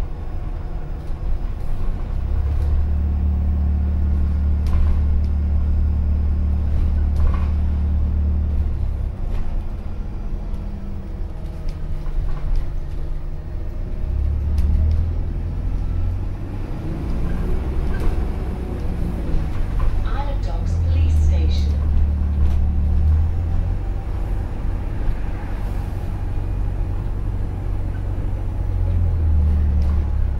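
Interior of an Alexander Dennis Enviro400H series-hybrid double-decker bus on the move: a deep drivetrain drone that swells in several long stretches and eases back in between, with scattered small clicks and rattles from the cabin.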